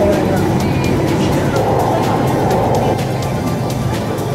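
Metro train running between stations, heard from inside the car: a steady, even rumble of wheels and running gear. Music sounds along with it.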